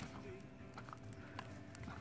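Faint, scattered knocks and scuffs of a Great Dane's paws and a man's feet on grass as they play, with one sharp click right at the start.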